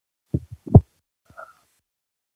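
Two or three short, loud, muffled low thumps over a video-call microphone, about half a second in, followed by a faint brief sound.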